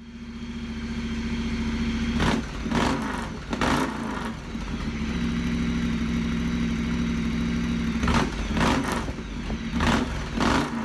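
Moto Guzzi Griso's transverse V-twin engine idling steadily, blipped with short throttle revs: three in quick succession from about two seconds in, then more near the end.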